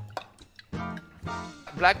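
Olive oil poured from a glass bottle into a ceramic dish, with faint dripping and liquid sounds, under background music that holds a steady note for about a second. A voice starts speaking near the end.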